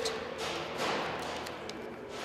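Hands handling a defibrillator training kit on a table: soft rustling that swells about half a second in, with a few light taps.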